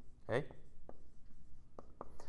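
Dry-erase marker writing on a whiteboard: faint scratchy strokes with a couple of light taps as letters are drawn.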